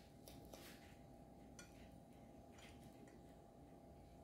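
Near silence: a faint steady hum with a few soft, faint ticks of a metal fork cutting into a piece of cake on a plate.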